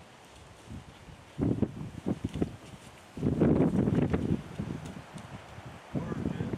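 Rustling and crunching of movement through dry grass and brush close to the microphone, coming in scattered bursts with the loudest rush lasting about a second in the middle.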